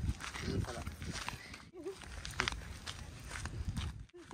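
Footsteps on a gravel road with short snatches of voice over a low rumble. The sound cuts off abruptly a little before two seconds in and picks up again in another take.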